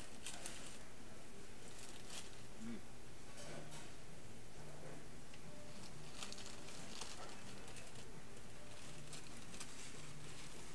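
Paper nugget bags and tray wrappers crinkling and rustling in short, scattered bursts as they are handled, over a faint low hum.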